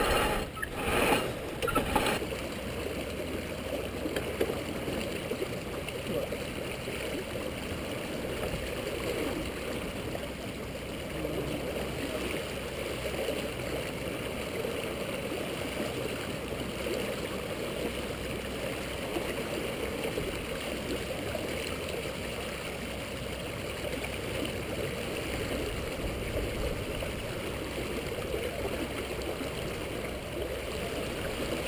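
Steady rush and gurgle of water streaming along a sailboat's hull as it runs downwind under spinnaker, with a few brief knocks or rustles in the first two seconds.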